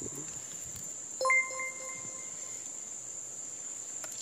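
Crickets chirping in a steady, high, continuous trill. About a second in, a single ringing electronic chime sounds and fades over about a second.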